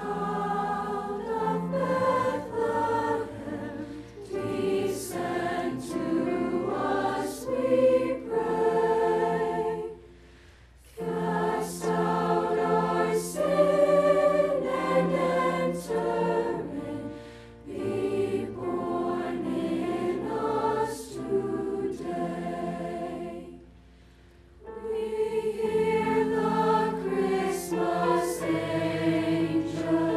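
Mixed choir of girls' and boys' voices singing held chords in parts. The singing breaks off briefly twice, about ten seconds in and again around twenty-four seconds, between phrases.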